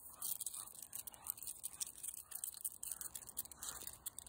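Faint scratchy rustling with irregular light clicks: the movement and handling noise of walking a dog on a leash.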